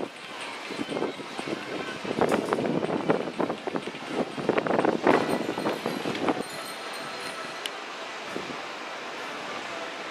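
Sky ride chairlift running, with an uneven rattling clatter from about two to six seconds in, then a steadier rushing noise.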